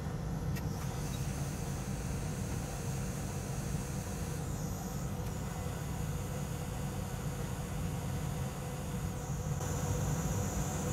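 Hot air rework station blowing steadily while reflowing a small surface-mount chip: a low, even rush of air with a faint high whine over it.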